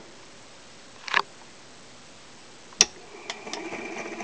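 A knock and a few sharp clicks from handling a Columbia Q Graphophone cylinder phonograph as the reproducer is set onto a two-minute black wax cylinder. Near the end, the faint surface hiss of the cylinder beginning to play comes up through the horn.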